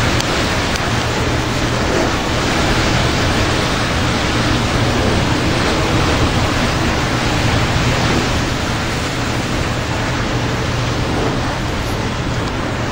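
Heavy thunderstorm rain driven by strong wind: a loud, steady rush of noise.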